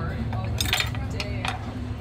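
Metal knife and fork clinking against ceramic plates, about three sharp clinks, over a steady low hum.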